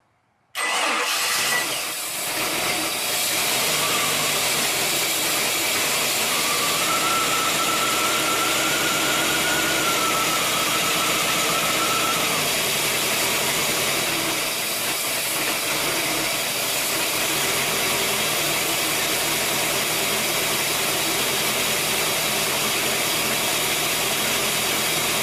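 The boat's carbureted V8 marine engine comes in suddenly about half a second in and then runs steadily at idle, sounding sweet. A faint whine rides over it for a few seconds in the middle.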